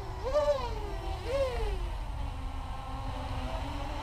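FPV racing quadcopter hovering some way off: its KDE 2315 2050kv brushless motors and 6-inch props give a buzzing whine. The pitch rises and falls twice in the first second and a half as the throttle is blipped, then holds steady. A low steady rumble runs underneath.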